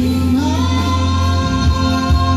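A woman and a man singing a duet into microphones over an electronic keyboard accompaniment with a steady bass. A sung note glides up early and is then held.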